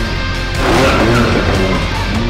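Hard rock music over a Can-Am Maverick X3 side-by-side driving past, its turbocharged three-cylinder engine and tyres giving a burst of noise from about half a second in to a second and a half.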